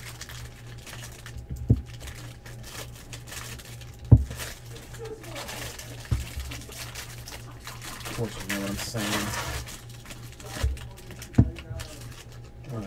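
Trading-card pack wrappers crinkling as packs are opened and handled, with a few sharp knocks of hands and cards on the table, the loudest about four seconds in, over a steady low hum.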